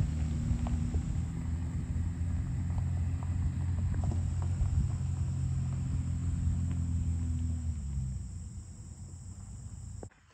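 Diesel truck engine idling steadily, a low even rumble at constant pitch that drops away about eight seconds in.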